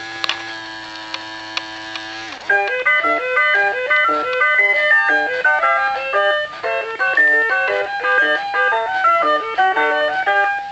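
Fisher-Price Magic Touch Crawl Winnie the Pooh toy playing its electronic tune: a held note for about two seconds, then a quick melody of short stepping notes.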